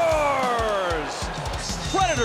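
A sports commentator's drawn-out goal call, one long shout that falls slowly in pitch and fades after about a second, over background music with a steady quick beat.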